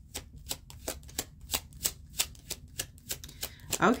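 A tarot deck being shuffled by hand: a steady run of short card strokes, about three or four a second.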